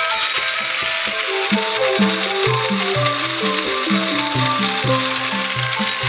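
Music: a stepping melody over a repeating bass line, with a steady noisy haze underneath.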